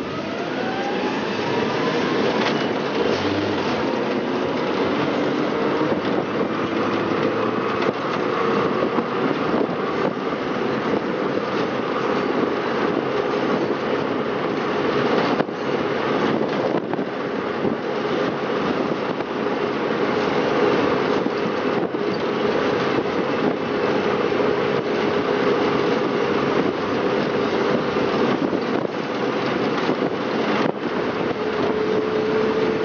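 Electric-converted 1957 VW Type 2 Samba bus driving under hard load up a steep hill, heard from inside the cabin. The motor whine rises in pitch over the first couple of seconds as it accelerates, then holds a steady hum over road and wind noise.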